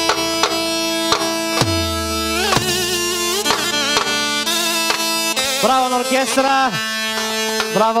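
Balkan dance music played at a celebration: an ornamented lead melody over a steady drum-and-bass beat. The low beat drops out about five seconds in, leaving the lead's bending runs.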